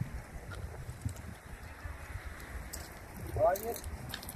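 Uneven low background rumble with a few faint clicks, and a man's short spoken phrase near the end.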